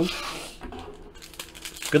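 Faint rustling and a few light clicks of a foil-wrapped trading card pack being handled in the fingers, just before it is torn open.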